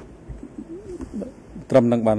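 Speech: a few faint voice sounds with gliding pitch, then a man starts speaking loudly near the end.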